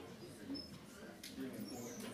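Faint murmur of audience voices in a lecture theatre as people start to chat and move, with a couple of brief high squeaks near the start and near the end.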